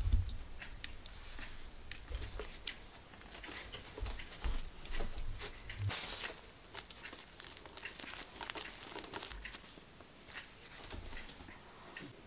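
Soft crinkling and rustling of a thin fresh bean curd sheet being rolled up by hand, with scattered light clicks and low bumps as the rolls are handled and set down on a cutting board and a steel tray.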